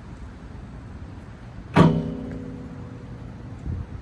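A BMX bike's single loud metallic clang with a ringing tail, about two seconds in, as it strikes the skatepark's metal or concrete features; a softer thump follows near the end.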